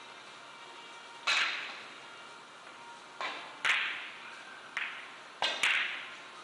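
Sharp clicks of carom billiard balls striking one another, six at irregular intervals, each with a short echoing tail.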